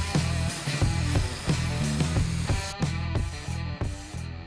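Background music with pitched notes and a steady bass line. Under it, the hiss of an aerosol can of moly roller chain lube spraying onto steel roller chains, steady at first and breaking into short bursts near the end.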